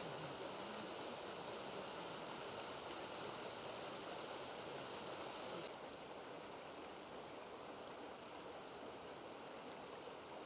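Spring-fed mountain stream rushing over rocks, a steady rush of water. About six seconds in, it abruptly becomes quieter and duller.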